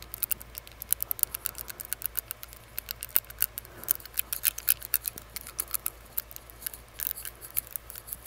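Rapid, irregular clicking of a metal tongue ring tapped against the teeth, several sharp clicks a second.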